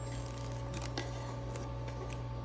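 Diced ham being pushed off a wooden cutting board into a plastic-lined slow cooker: a few faint soft taps, over a steady low hum.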